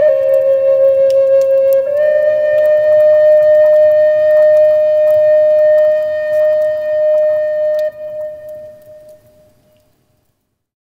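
Instrumental music: a flute-like instrument holding long, steady notes, dipping slightly in pitch at the start and stepping back up about two seconds in. It fades out over the last two seconds.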